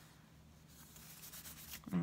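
Faint paper rubbing and rustling as hands smooth a planner sticker strip down onto a spiral planner page and handle the planner, starting a little under a second in and growing slightly louder.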